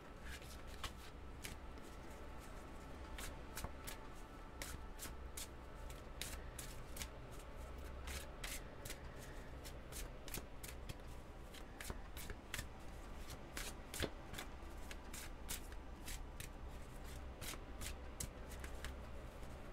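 A deck of oracle cards shuffled by hand: a long run of irregular soft snaps and clicks as the cards slide against each other, over a faint low hum.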